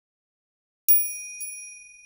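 A small bell chime sound effect struck about a second in, with a weaker second strike half a second later, ringing with a high clear tone that fades slowly; it marks the break between one story and the next.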